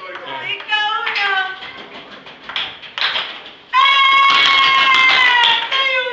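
A long, high-pitched yell or scream, held for about two seconds from just past the middle and dipping in pitch at the end, is the loudest sound. Before it come short bursts of chatter and a few light taps of a ping-pong ball.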